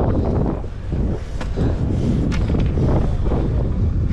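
Wind buffeting a body-worn camera's microphone: a steady low rumble, with two light clicks in the middle.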